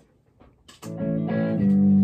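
Electric guitar strumming a G major chord, the IV chord of a IV–V loop in the key of D, starting about a second in and ringing out, struck again partway through.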